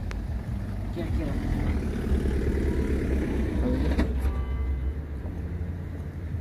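Low steady rumble of a motor vehicle engine running, with faint voices over it.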